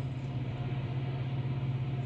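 Steady low hum of a stationary car's cabin with the vehicle running, a constant drone heard from inside the car.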